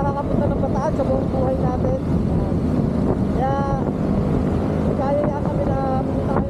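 Steady wind buffeting the microphone over the running engine and road noise of a scooter underway, with a voice coming through in short bits.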